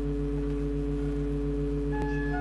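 Pipe organ holding a sustained chord over a deep bass, one low note in it pulsing about six times a second.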